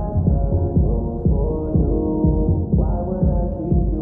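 Muffled R&B song with a steady beat and all its treble cut, like store music heard from inside a fitting room.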